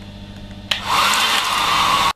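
Handheld electric hairdryer switched on about two-thirds of a second in: a sudden rush of blown air that settles into a loud, steady whoosh with a motor whine.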